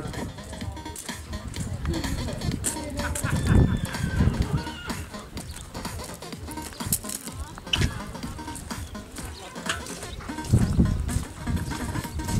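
Faint background music and distant voices in an open arena, with a few dull low thumps about four seconds in and again near the end.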